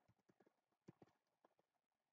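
Near silence with a few faint, irregularly spaced clicks of a computer mouse, most of them in the first second and a half.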